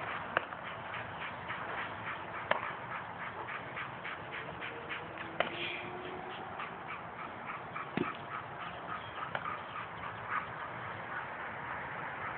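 A dog panting rapidly and steadily, about three breaths a second, because it is tired. A few sharp smacks, like a baseball landing in a glove, stand out about four times.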